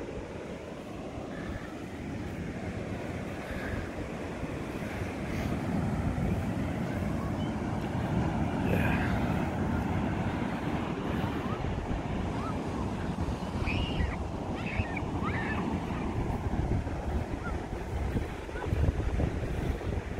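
Ocean surf breaking on the beach, a steady rush with wind buffeting the microphone, a little louder from about six seconds in.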